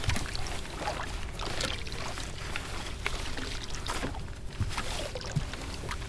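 Choppy lake water lapping and slapping against the hull of a small fishing boat, with wind rumbling on the microphone and scattered knocks and rustles on board.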